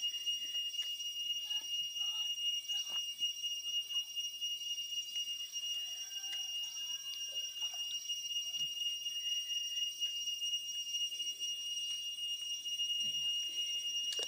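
A continuous, steady high-pitched whine holding one pitch with a fainter higher overtone, over a soft hiss, with a few faint small clicks scattered through it.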